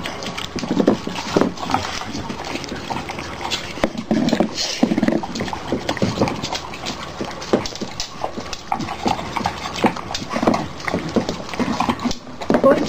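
Dogs eating from plastic bowls: irregular chewing, licking and smacking, with the bowls knocking and clicking as noses push into them.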